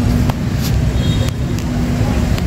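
City street traffic: a steady rumble of passing engines with a constant low hum.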